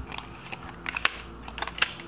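Oracle cards being handled and laid down on a table: a handful of short, light clicks and taps of card stock, irregularly spaced, over a faint steady hum.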